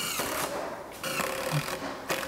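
Cordless drill running under load into the 3/4-inch plywood side of a cabinet, in short runs. The motor's whine drops in pitch as it bites at the start.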